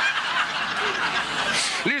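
Live audience laughing together in a theatre.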